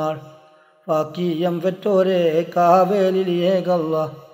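A solo voice chanting a devotional mala verse in a melodic recitation, holding and bending long notes. The previous phrase dies away at the start and a new one begins just under a second in.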